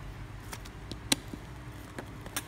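A few light taps and one sharp click about a second in: a small plastic toy figure knocking against its plastic base as it is fitted on, over a faint low hum.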